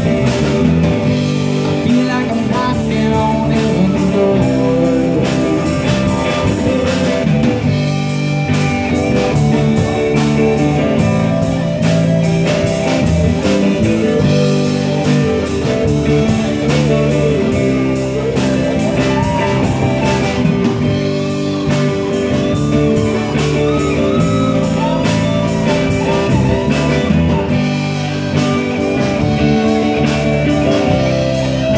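Live rock band playing an instrumental passage: electric bass and drum kit under a lead electric guitar solo with bent, sliding notes.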